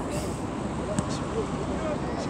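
Faint distant shouts of players and onlookers over a steady outdoor rush of wind and background noise, with one short knock about halfway through.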